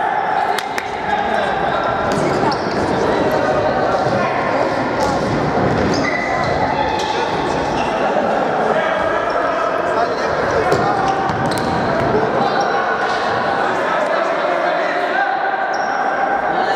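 Indoor futsal game: players' voices calling across the court, with the ball being kicked and bouncing on the wooden floor, all echoing in a large gym hall.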